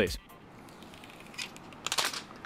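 Plastic screen-protector film being peeled off a smartphone's glass screen: a faint crackling, with a couple of sharper crackles in the second half.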